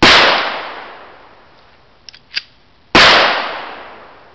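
Two shots from a 9mm Beretta pistol, about three seconds apart, each followed by a long fading tail. A few faint clicks fall between them.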